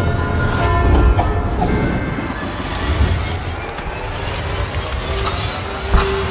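A train moving through the station: a heavy low rumble with several whining tones, some steady and some slowly rising in pitch, and a few knocks.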